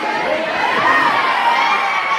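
A crowd of teenage schoolchildren cheering and shouting all at once, with high-pitched calls rising and falling about a second in.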